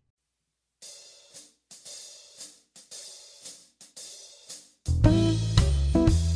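A blues song opening: quiet hi-hat and cymbal taps played alone at a steady pulse, then the full band (drums, bass and electric guitar) comes in loudly about five seconds in.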